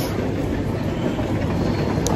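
Steady rumbling background noise of an airport boarding corridor, with no single distinct event.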